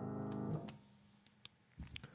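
Grand piano holding the closing chord of a hymn, ringing and slowly fading, then damped about half a second in as the keys and sustain pedal are released. A few faint clicks follow.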